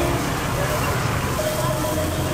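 Steady street-market background noise: a constant low traffic rumble with people's voices chattering.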